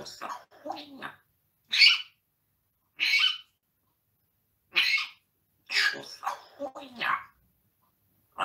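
An African grey parrot giving short, sharp calls roughly every second or two, then a run of garbled, speech-like chatter near the end.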